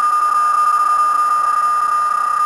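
PSK31 digital-mode signal from an HF transceiver's speaker: a single steady tone a little above 1 kHz over constant band hiss.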